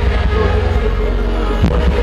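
Live concert music over a PA system: a deep, sustained bass throb with pitched notes above it and a single drum hit near the end.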